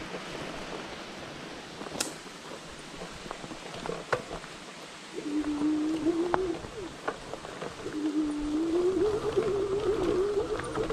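Fat-tire e-bike rolling over a leaf- and twig-strewn dirt trail, with tyre noise and scattered clicks and knocks from sticks. About five seconds in, the electric drive motor's whine comes in, drops out for a moment, then returns and rises in pitch as the bike speeds up under assist.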